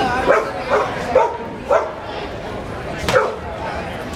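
A small dog yapping, about five short sharp barks in quick succession and one more about three seconds in, over background crowd chatter.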